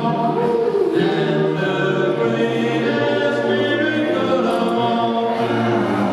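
A small group of men singing together in harmony, holding long chords that shift every second or so, with no drums heard.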